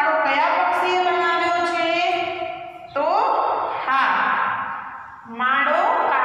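A woman's voice speaking steadily, with two short pauses about three and five seconds in.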